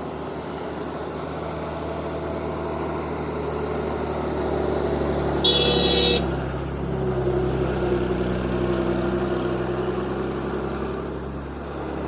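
A heavy diesel goods truck, a Tata twelve-wheeler, labouring up a steep hairpin bend and passing close by. Its engine drone grows louder towards the middle and fades near the end, with a brief horn toot about five and a half seconds in.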